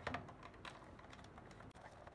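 Fingers clicking and tapping on the plastic case of an old Sony clock radio as it is handled: a few sharp clicks at the start and about half a second in, then lighter ticks.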